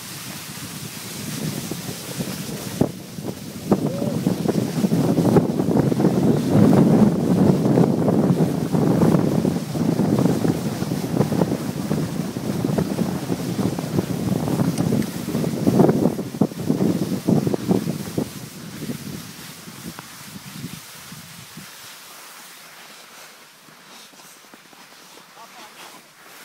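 Wind buffeting the microphone and skis scraping over snow during a downhill run, building a few seconds in, strongest through the middle, and dying away over the last several seconds as the skier slows.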